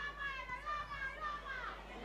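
Faint, high-pitched shouting and calling from spectators, sounding like children's voices, with wavering pitch, carried across an open rugby ground.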